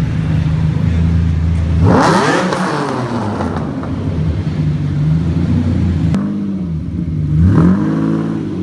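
Lamborghini Diablo V12 engine running at low revs in traffic, revved sharply about two seconds in and then dropping back, with another rev rising near the end.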